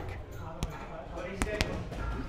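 Boxing gloves striking an Everlast heavy bag: three sharp thuds, the last two in quick succession about a second and a half in.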